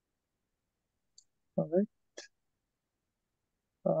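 Dead silence broken about a second and a half in by a short vocal sound from a person's voice, a brief word or 'uh', with a short hiss just after it; speech starts again at the very end.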